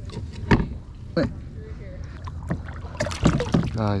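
A plastic kayak being handled on the water: a series of sharp knocks and taps against the hull, loudest in a cluster near the end, over a low steady rumble of water and handling noise.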